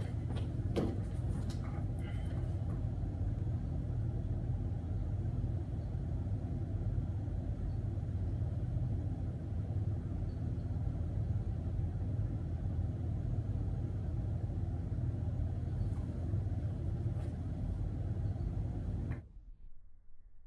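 Steady low mechanical hum of room machinery, such as a refrigerator or ventilation, with a few light knocks and clicks in the first two seconds as a person sits down on a plastic chair. The hum cuts off suddenly near the end.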